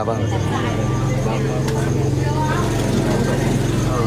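A steady low engine-like hum, with faint voices underneath.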